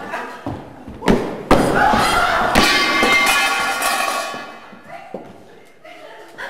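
Two heavy thumps on a wooden stage floor about a second in, followed by a loud, drawn-out voice that fades away by about four and a half seconds.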